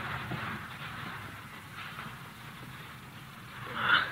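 Sound effect of a garden fountain running, a steady splashing noise on an old, narrow-sounding 1943 radio recording. It fades a little, and there is a brief louder rush near the end.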